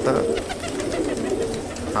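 Domestic fancy pigeons cooing, several soft coos overlapping into a steady low sound.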